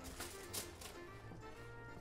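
Faint background music with steady held notes. A soft patter about half a second in as broccolini slides out of a stainless steel bowl onto a foil-lined baking tray.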